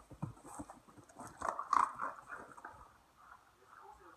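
A dog chewing and crunching a treat: a string of small, quick clicks, loudest a little under two seconds in, and dying away near the end.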